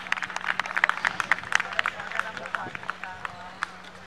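Scattered, irregular hand claps from a few spectators at a football pitch, with voices calling out near the end and a faint steady hum underneath.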